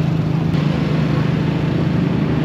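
Motorcycle engine of a motorized becak (motorcycle-pushed rickshaw) running steadily under way, a constant low drone, with road noise around it.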